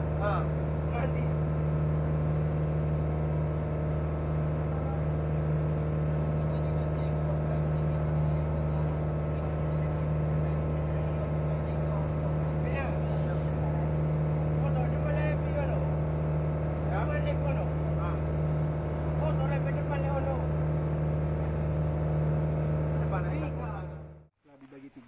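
Wooden boat's engine running at a steady pace, a low, unchanging drone, with faint voices over it; it cuts off abruptly near the end.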